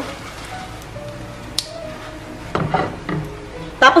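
Soft, happy children's-style background music, with a single faint click about one and a half seconds in.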